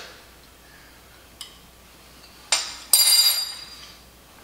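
Metal spoons set down against dishware with two sharp clinks, about two and a half and three seconds in. The second is louder and rings briefly. A light click comes a little earlier.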